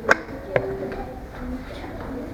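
Two sharp slaps of children's taekwondo kicks and punches landing in free sparring, the first about a tenth of a second in and louder, the second about half a second later, over a background murmur of voices.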